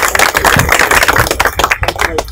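A small group of people clapping their hands: a quick, uneven patter of sharp claps.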